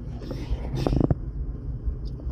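Car driving on a road, heard from inside the cabin as a steady low rumble of engine and tyre noise, with a brief crackle about a second in.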